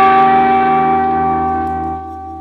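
Distorted electric guitar letting one long held note ring out with steady sustain, fading slightly near the end.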